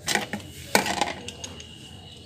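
A few sharp metallic clinks and knocks from a socket wrench being handled and fitted onto a motorcycle's oil drain bolt, with a plastic drain bucket set down beneath it. The loudest knocks come right at the start and just under a second in.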